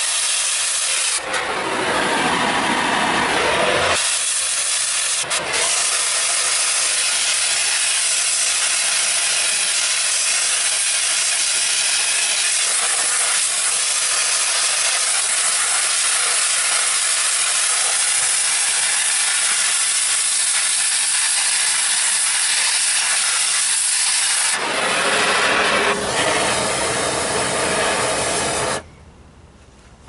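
Gas torch flame hissing steadily as it heats the painted sheet steel of a metal sculpture. The rush grows fuller and lower for a few seconds near the start and again near the end, then cuts off suddenly about a second before the end.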